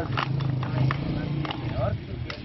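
A man's low, drawn-out voice, with a few sharp clicks and a short snatch of speech near the end.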